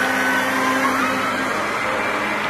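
New Holland T6070 Plus tractor's six-cylinder diesel running steadily as it tows a Fliegl slurry tanker past, heard as a constant whirring, rushing noise.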